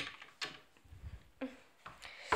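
A few faint knocks and clicks of things handled against wooden furniture, with a low dull thud about a second in.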